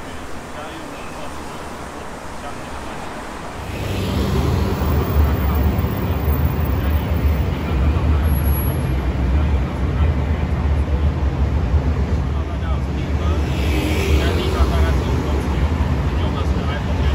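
Road traffic noise picked up by a distant camera microphone, with a deep low rumble that comes up sharply about four seconds in. The traffic drowns out the voice of a speaker standing several metres from the microphone.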